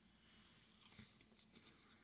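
Near silence with faint chewing of a mouthful of frozen fruit pearls, and a soft click about a second in.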